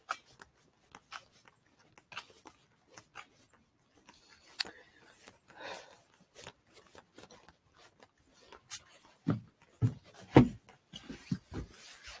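Footsteps of a person walking on an asphalt driveway and then a paved walkway, soft steps every half second or so with rubbing from the handheld camera. A few louder thumps come near the end.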